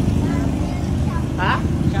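Motor scooter engine running at low revs as the scooter rolls up at low speed, a steady low hum.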